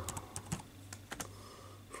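Typing on a computer keyboard: a quick run of irregular keystroke clicks, most of them in the first second or so.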